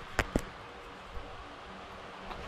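Two sharp clicks in quick succession, then faint steady room noise with a low hum.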